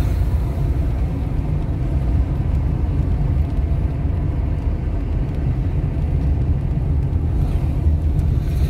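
A car's steady low rumble of engine and road noise, heard from inside the moving car.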